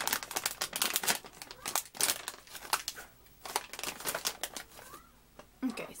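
A snack bag crinkling and rustling as it is opened and handled to get at the pretzel pieces. The crackling is busiest in the first three seconds and sparser after that.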